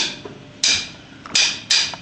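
Drummer's count-in: sharp, bright clicks of the drumsticks, one, then a quicker even run about three a second.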